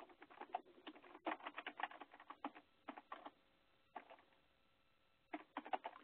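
Computer keyboard keys clicking faintly in quick, irregular runs as shell commands are typed, with a pause of about a second before a last short run near the end.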